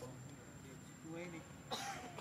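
Faint voices with a few short pitched sounds, and a sharp cough-like burst near the end.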